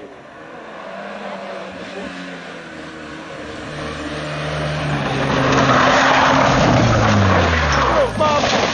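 A rally car's engine approaching hard and growing steadily louder, with loud tyre noise as the car slides through the bend. The engine note falls over the last second or so as the car leaves the road and goes into the undergrowth.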